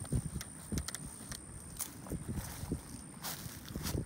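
Footsteps walking through clover and grass: irregular soft steps with rustling of the plants.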